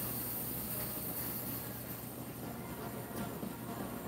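Steady high-pitched chirring of night insects such as crickets, over a low steady hum.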